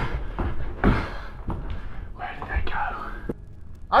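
Footsteps climbing carpeted stairs: a series of dull, uneven thumps, with a breathy whisper about two seconds in.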